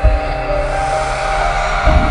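Synthesized intro music for a TV channel ident. Sustained electronic notes play over a rising swell of noise, with deep bass hits at the start and again near the end.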